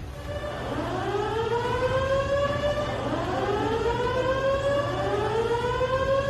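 Warning siren wailing: a tone that sweeps up in pitch and then holds, starting over about three times, over a steady low rumble.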